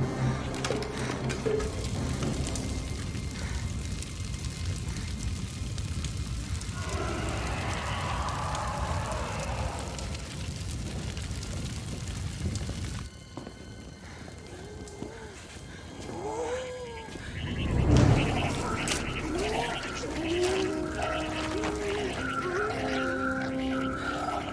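Film soundtrack. A flamethrower and fire burn as a steady rushing noise that cuts off suddenly about halfway through. The quieter stretch after it carries music and a series of short rising-and-falling cries, with a loud low boom about two-thirds of the way in.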